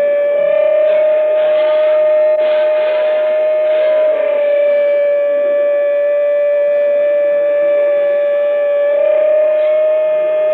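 Live psychedelic rock instrumental dominated by one long, steady held note with overtones, sustained over a dense wash of band sound.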